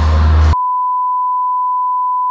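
Loud rock music cuts off about half a second in and is replaced by a steady, pure, high beep tone, like a censor bleep or test tone, held unchanged for about two seconds.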